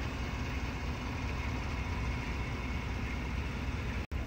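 Steady low rumble of room noise with a faint hiss, unchanging and without distinct events.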